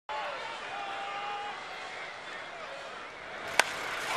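Steady ballpark crowd noise with scattered fans' voices, then, about three and a half seconds in, a single sharp crack of a baseball bat squarely hitting a pitch.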